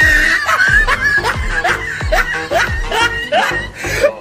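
Background music with a steady beat, with laughter over it near the start.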